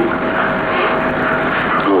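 Steady rushing background noise with a faint steady tone running through it for most of the pause; a man's voice starts again right at the end.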